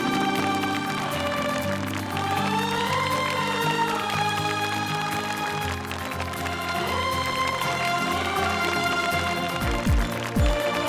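Dramatic background music: a sustained melody over held chords, joined about six seconds in by a low pulsing beat, with a deep drum hit at the very end.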